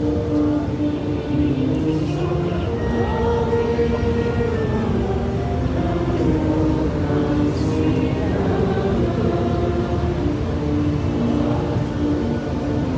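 Brass band playing a slow piece in sustained, changing chords.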